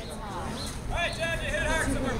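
A raised voice calls out for about a second, starting about a second in, over a steady low rumble.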